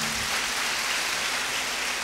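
Audience applauding: a steady spread of clapping, without a clear rise or fall.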